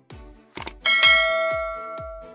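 Two quick mouse-click sound effects, then a bright notification-bell ding that rings and slowly fades. Background music with a steady beat plays under it.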